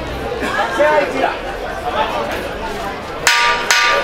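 Boxing ring bell struck twice in quick succession near the end, two short metallic rings about half a second apart: the signal for the end of a round.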